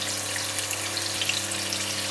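Sliced red onions and garlic frying gently in olive oil in a sauté pan over medium heat: a steady, even sizzle, with a faint low hum beneath.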